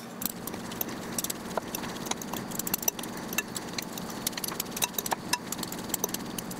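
Two metal forks shredding cooked chicken in a glass bowl: a steady run of small clicks and scrapes as the tines tap and drag against the glass, over a faint low hum.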